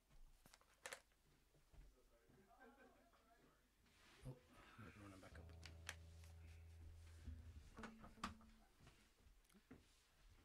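Faint sounds of a water bottle being refilled: a few short clicks, then a steady low hum for about two seconds in the middle with more clicks after it.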